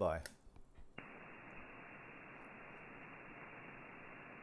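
FlexRadio HF transceiver switching from transmit back to receive about a second in, after which steady 40-metre band noise hisses from the receiver, thin and with no highs, as the single-sideband receive filter cuts it off.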